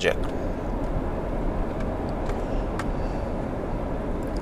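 Steady low road and engine noise inside a moving car's cabin, with a couple of faint clicks about two and a half seconds in.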